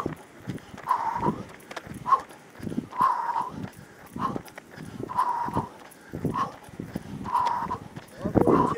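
A runner's heavy breathing close to the microphone, about one breath a second, each breath carrying a faint whistle, with footfalls in between.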